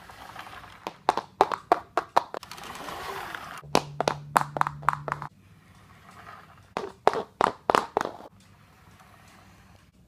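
Three bursts of quick, sharp taps, a few a second, over a faint hiss near the start, with a steady low hum under the middle burst.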